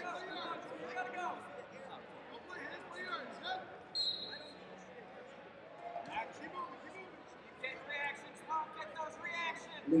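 Indistinct voices of coaches and onlookers carrying around a large arena, with brief squeaks and light thuds of wrestling shoes on the mat as two heavyweight freestyle wrestlers hand-fight; one short sharp squeak about four seconds in.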